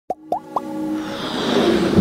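Intro sound effects for an animated logo: three quick pops, each rising in pitch, in fast succession. Then a swelling whoosh over a held music chord that builds louder toward the end.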